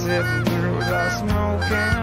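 A run of goose honks, several short calls in a row, over background music with steady low notes.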